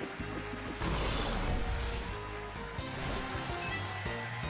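Online video slot's own sound: background music under the whirring and clicking of the reels spinning and stopping, then a big-win jingle starting near the end.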